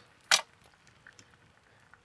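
A single short, sharp click about a third of a second in, followed by a few faint ticks.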